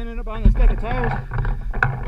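A person's voice calling out with no clear words: a brief call at the start, then a longer call about half a second in that rises and falls in pitch. Under it runs a low rumble, with a thump just before the longer call.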